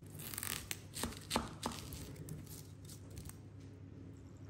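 Knife slicing an onion on a wooden cutting board: a handful of crisp cracks as the onion layers split apart under the Scandi-ground blade, four in quick succession in the first two seconds and one more later.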